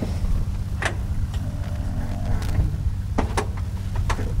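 A few sharp metal clicks as the tow rope's ring is fitted into the glider's nose tow release, over a steady low engine drone.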